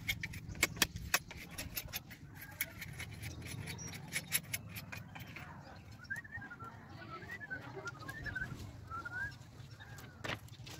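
Bamboo being split and shaved into slats with a blade: a run of sharp clicks and scraping knocks in the first few seconds. A bird chirps in short wavering calls from about six seconds in.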